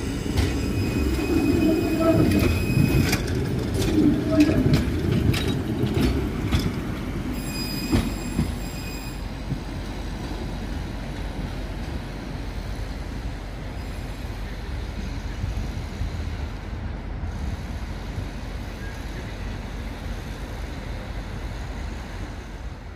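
A 71-623 (KTM-23) low-floor electric tram passing close by, with a high steady whine and a run of clacks as its wheels go over the rail joints. About eight seconds in it fades as it draws away, leaving steady street-traffic noise.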